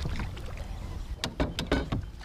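Angler handling a rod and reel on a small boat: a steady low rumble with a quick run of sharp clicks and knocks in the second half as the rod is swept back.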